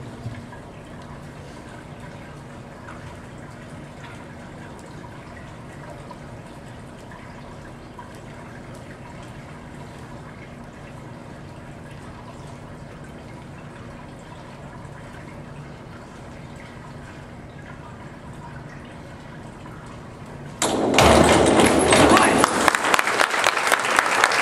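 Steady low hum of an indoor pool hall for about twenty seconds, then, near the end, a sudden loud burst of noise lasting about four seconds: the splash of a springboard diver entering the water and spectators applauding.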